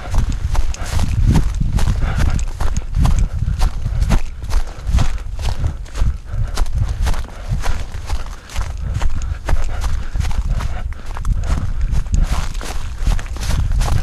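A runner's footfalls on a dirt path, a quick steady rhythm of thuds over a constant low rumble.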